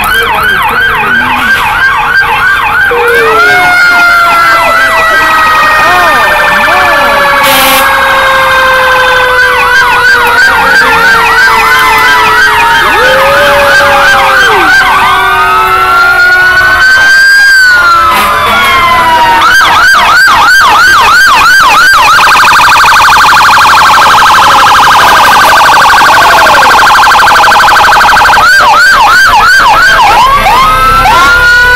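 Several fire-truck sirens sounding at once, close and very loud. Fast yelping warbles alternate with long, slowly falling wails, and a dense, steady warble holds for several seconds late on.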